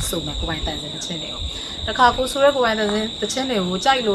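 Steady, unbroken high-pitched trill of crickets, under a woman talking; her voice is the loudest sound in the latter half.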